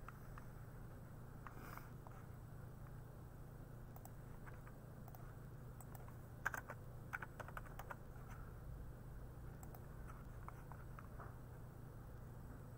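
Faint clicks of a computer mouse and keyboard over a steady low hum, with a quick run of clicks about six and a half seconds in.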